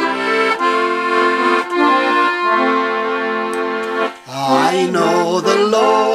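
Piano accordion playing a short introduction in held chords, then a man and a woman start singing along with it about four seconds in.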